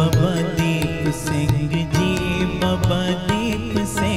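Sikh kirtan: a hymn sung over a steady harmonium and regular tabla strokes.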